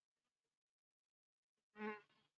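Near silence, broken near the end by a single brief buzzing, pitched sound lasting about a quarter of a second.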